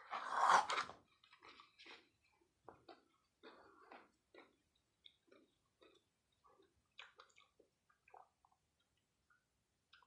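A short cough in the first second, then faint, irregular chewing of a soft chocolate bar with small crispy bits inside.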